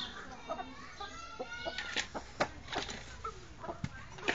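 Índio Gigante chickens clucking: a drawn-out pitched call, then a quick run of short, sharp clucks from about halfway through.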